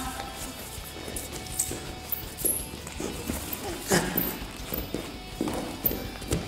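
Quiet background music under a scatter of scuffs and thuds of feet on a wrestling mat as two wrestlers drill a throw-by at speed. The loudest thump comes about four seconds in.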